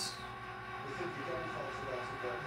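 Quiet, steady background hum between stretches of speech, with a few faint brief tones about a second in.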